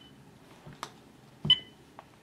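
Cordless phone handset giving one short, high electronic beep with a click about one and a half seconds in, as a button is pressed to take the call; a faint click comes a little earlier.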